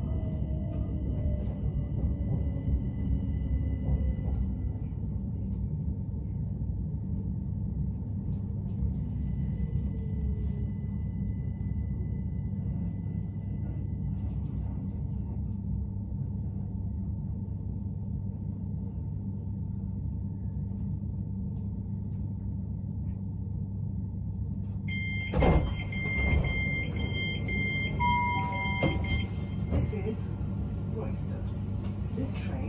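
Bombardier Class 387 Electrostar electric train braking into a station: a whine from its traction motors falls in pitch over the first few seconds, then a steady low hum as it rolls slowly to a stop. Near the end comes a sharp clunk, followed by a few seconds of rapid two-tone beeping, the door-release warning as the doors open.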